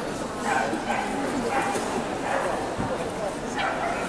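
Dogs barking and yipping in a few short, separate calls over steady crowd chatter.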